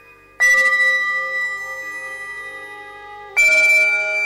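Two bell-like notes struck about three seconds apart, each ringing on and fading slowly, the second pitched a little higher.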